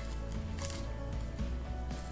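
Background music with steady sustained tones, and faint scraping of a paring knife cutting around the top of a pomegranate's rind.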